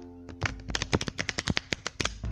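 A deck of tarot cards being shuffled: a quick run of sharp card clicks, about ten a second, starting about half a second in and lasting about a second and a half. Soft background music plays underneath.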